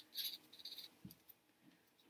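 Two strips of thick cardboard handled and rubbed against each other as they are lined up: a few faint, short scratchy scrapes in the first second and a soft knock just after.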